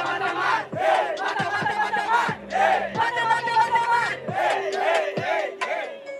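A rap-battle crowd chanting and shouting together in repeated loud rising-and-falling cries, egging on an MC.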